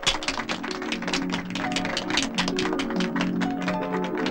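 Hand-clapping in a quick, even rhythm, about six or seven claps a second, over orchestral film music that has just started.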